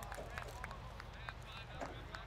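Faint distant shouting of voices across an open soccer field, with several sharp short ticks and a steady low rumble underneath.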